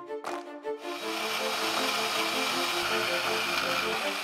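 Background music of short, plucked-sounding notes. From about a second in, a steady hiss of a portable band saw cutting through a cast aluminium sprue runs underneath it.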